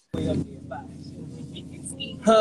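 Steady low rumble of a subway train and station, heard through a phone's microphone, cutting in abruptly just after the start, with faint voices over it.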